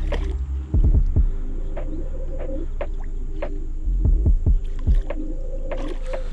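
Low rumbling handling noise with clusters of dull thumps about a second in and again around four to five seconds, mixed with water being stirred as a hooked carp is brought in to a landing net at the river's edge.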